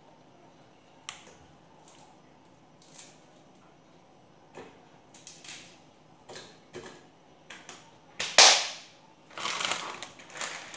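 Plastic instant-noodle packets crinkling and rustling as hands handle them, in scattered short crackles. The loudest is a sharp crackle about eight seconds in, followed by a longer rustle near the end.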